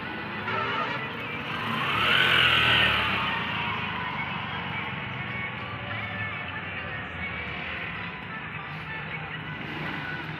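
Highway traffic going past. One vehicle passes loudest about two seconds in, its sound rising and then falling away, over a steady traffic rumble.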